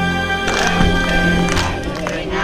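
Background music, then about half a second in a cut to a group of children's voices with hand clapping.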